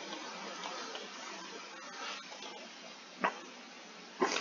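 Low, steady hiss of a poor microphone's room tone, with one short click a little over three seconds in.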